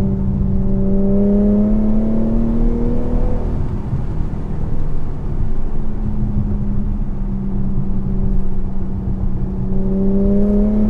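Infiniti Q50's engine and exhaust heard from inside the cabin, the note climbing slowly under acceleration for the first few seconds, easing off, then climbing again near the end, over steady tyre and road noise on a wet road.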